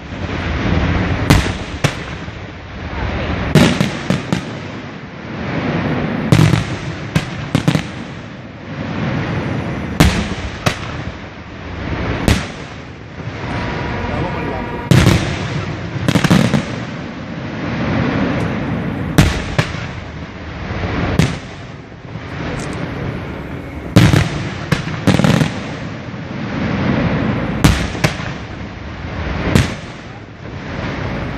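Aerial firework shells bursting overhead: an irregular run of sharp bangs about every one to two seconds, with continuous noise from the display between them.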